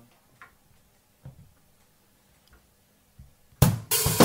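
A quiet room with a few faint clicks and taps, then about three and a half seconds in a song starts suddenly with a loud, steady drum beat.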